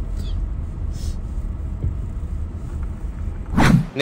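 Steady low rumble of a car driving slowly. A short, loud rush of noise comes near the end.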